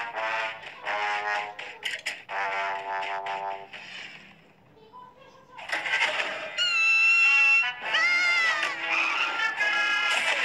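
Cartoon soundtrack of music mixed with wordless character vocal sounds. It dies down almost to nothing about halfway through, then comes back louder with gliding and held high tones.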